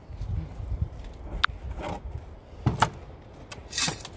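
Wind rumbling on the microphone, with a few scattered clicks and knocks as rocks and a glass jar are handled on a table.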